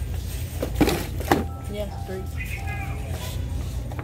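Two short knocks about a second in, from ribbon spools and cardboard display trays being handled on a store shelf, over a steady low hum; a voice says "yeah, three".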